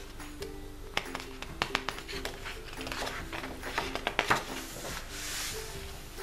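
Light background music with a simple melody of held notes. Over it, the crisp rustles and clicks of a paper colouring book's pages being handled, ending in the swish of a page turning over near the end.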